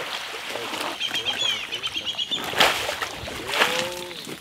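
Birds calling: a quick run of high chirps about a second in and a lower call near the end, over water sloshing and splashing as a saltwater crocodile moves through a shallow muddy creek.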